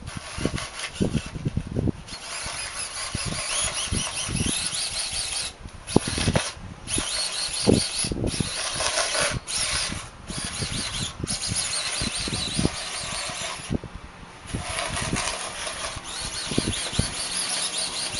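Small sumo robot's electric gear motors whining as it drives and turns, cutting out and starting again several times, with knocks and scraping from its plow blade pushing snow across the paving tiles.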